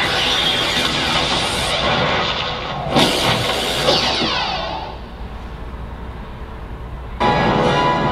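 Soundtrack of a superhero action clip played through room loudspeakers: music with fight sound effects, a sharp hit about three seconds in and another a second later. It fades down, then cuts back in loudly near the end.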